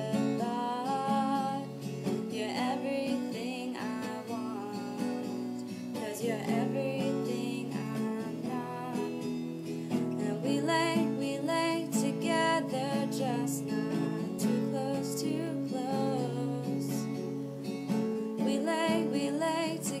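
Acoustic guitar strummed steadily with a solo voice singing over it.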